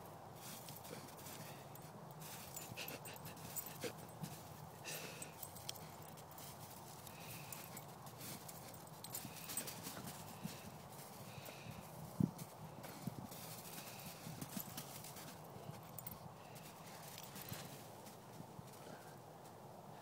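A Weimaraner puppy digging in crusted snow: irregular crunching and scraping as its paws and snout break up icy chunks, with a sharper knock about twelve seconds in.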